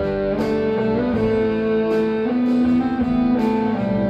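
Live blues-rock band: a Les Paul-style electric guitar plays held lead notes that slide between pitches over strummed acoustic guitars, with a light percussion hit about once a second.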